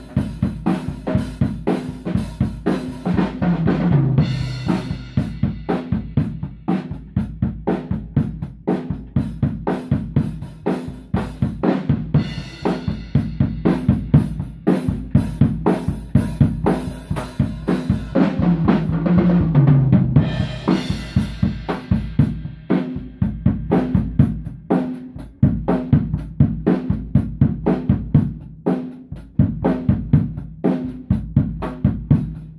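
Tama acoustic drum kit played close up in a steady beat on kick, snare and cymbals. Tom fills run down the kit in falling pitch at about four seconds and again at about nineteen seconds, with cymbals ringing out around them.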